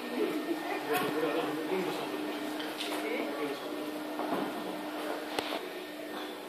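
Indistinct voices of people talking in a large hall, over a steady low hum, with one sharp click about five seconds in.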